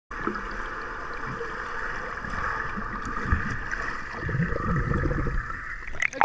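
Muffled underwater sound in a swimming pool, picked up by a submerged camera: a steady hiss, with low churning water sounds growing stronger about two-thirds of the way through. It cuts off abruptly just before the end as the camera comes up out of the water.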